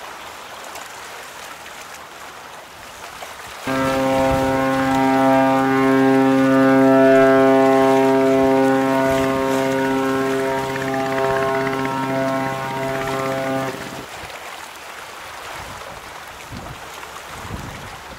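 A ship's horn sounding one long, steady blast of about ten seconds, starting about four seconds in and cutting off suddenly, over the steady rush of water from a passing ship's bow wave.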